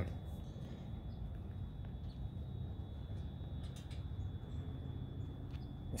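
Quiet outdoor background: a steady low rumble with a faint, steady high-pitched tone above it.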